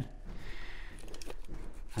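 Faint handling noise from gloved hands moving cut stainless steel exhaust tube pieces, with a few light taps later on.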